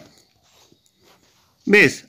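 Near silence in a pause of speech, then a single short spoken word near the end.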